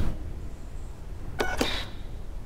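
Radio-controlled toy car's small electric motor giving one short whirr about one and a half seconds in, over a low steady hum; the car does not get going.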